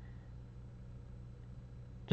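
Faint room tone in a pause between sentences: a steady low hum with a faint hiss, no other events.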